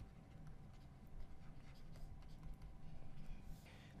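Faint scratching and tapping of a stylus on a tablet screen as a short label is handwritten, a scatter of small ticks over a low steady room hum.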